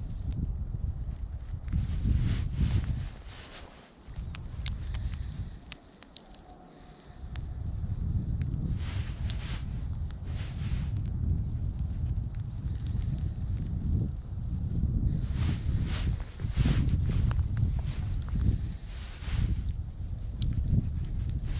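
Wind buffeting the microphone: a low rumble that dies away briefly twice in the first third, with short hissy rustles now and then.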